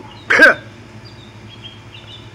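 A man's voice makes one short syllable about a third of a second in, then a pause with only faint background noise.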